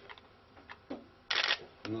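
A camera shutter firing once, a short crisp burst about a second and a half in, during a pause in a man's speech, with a couple of faint clicks around it.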